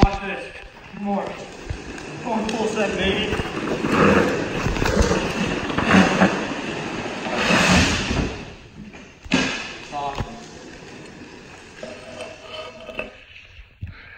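Razor drift trike rolling and sliding across a concrete floor, its hard rear wheels scraping, with a sharp knock about nine seconds in. Voices call out over it.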